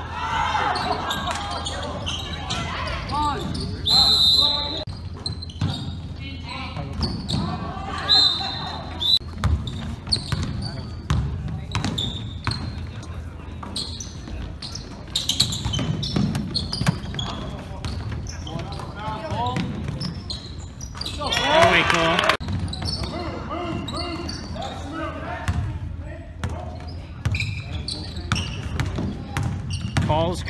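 Basketball game in a gym: a ball dribbled on the hardwood floor, knocking steadily, with short high sneaker squeaks and players and spectators calling out. Voices swell into a loud shout a little past the middle.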